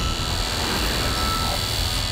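Electronic sound design of a TV show's logo sting: a loud, dense synthesized rumble with a steady high tone held through it.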